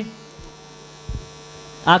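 Steady electrical mains hum from the microphone and public-address chain, heard in a pause between spoken phrases, with a brief low thump about a second in.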